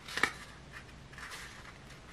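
File-folder card cone handled and pressed at its glued seam: a short crackle about a quarter second in, then faint rustling of the card.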